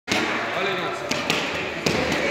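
Boxing gloves striking focus mitts: three sharp smacks in the second half.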